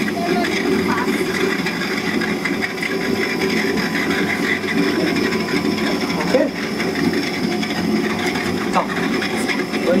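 Potter's wheel running steadily: a continuous mechanical whir with a faint steady hum, while wet clay is shaped on it.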